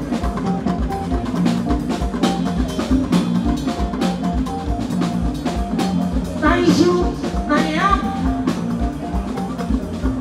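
Live Fuji band playing, with drum kit and percussion keeping a steady beat under a repeating short melodic figure. A voice comes in briefly about two-thirds of the way through.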